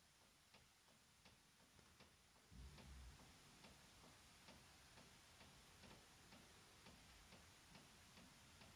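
Near silence with faint, regular ticking, a little over two ticks a second, and a low rumble coming in about two and a half seconds in.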